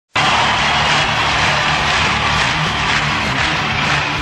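Loud, dense intro music sting for a TV show's logo, cutting in abruptly and holding steady without letup.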